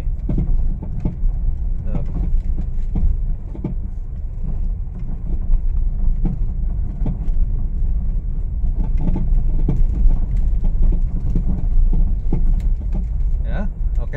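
Irregular clunking knocks from a Honda Mobilio's front suspension as it goes over a rough, bumpy road, heard inside the cabin over a steady low road rumble. The 'glutuk-glutuk' knock comes from a badly worn front stabilizer link.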